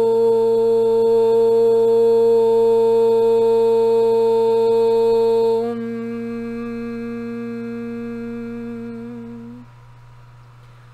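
A woman's voice toning: one long note held on a steady pitch, opening on an "oh" vowel. About six seconds in it turns quieter and changes colour, and it stops near the end. The toning is meant to release blockages at the third-eye chakra.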